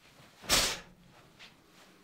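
One sharp, forceful exhalation, short and breathy, about half a second in, as a Taekwon-Do outer forearm high block is executed with breath control.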